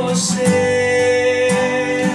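A man singing a Portuguese worship song, holding one long note, accompanied by his own acoustic guitar.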